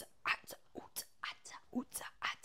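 A woman whispering quietly in short bursts, a few a second.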